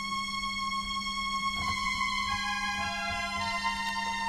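1974 Solina/ARP String Ensemble string synthesizer played on its violin setting alone: a held note with further notes added one at a time, building a sustained string chord.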